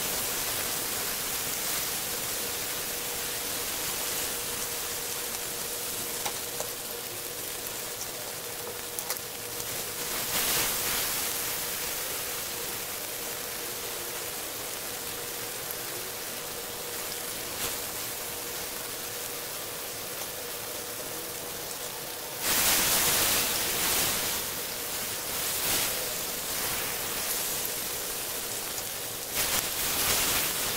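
Beef steak slices and garlic cloves sizzling on a hot ribbed grill pan: a steady frying hiss. It swells briefly about ten seconds in, grows louder for a couple of seconds about two-thirds of the way through, and again near the end as a spatula lifts the meat. A faint steady hum runs underneath.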